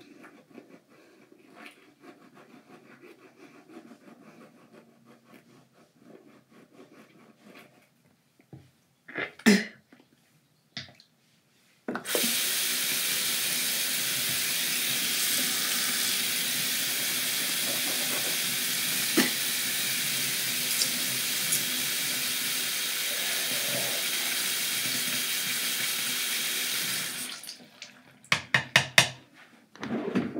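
Faint toothbrush scrubbing, a couple of sharp knocks, then a bathroom sink tap running steadily for about fifteen seconds, starting about twelve seconds in. It stops a few seconds before the end, followed by quick clicks and knocks at the sink.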